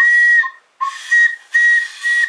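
Homemade whistle of a plastic tube and a drinking straw blown in about four short, breathy toots, each on one steady high note, some opening with a brief lower note that jumps up.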